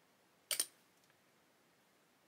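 A brief, sharp double click of small hard objects being handled, followed by a faint tick; otherwise quiet.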